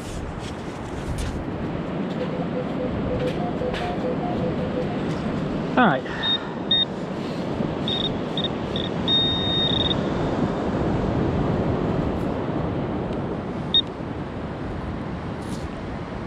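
Handheld metal-detecting pinpointer beeping high-pitched in short bursts, with one longer tone, as it is worked through the sand onto a coin. A steady rush of beach wind and surf runs underneath.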